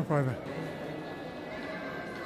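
A person's voice in a short exclamation that falls in pitch at the start, then a low, steady background hum.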